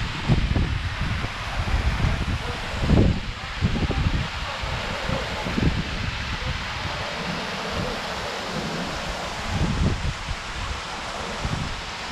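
Small waterfall pouring over rock and splashing into a pool, a steady rushing, with wind buffeting the microphone in irregular low gusts.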